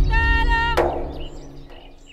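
Film soundtrack song: a high female voice sings wavering held notes over a sustained instrumental backing. About three-quarters of a second in, a sharp hit cuts the singing off, and the music then fades almost to quiet near the end.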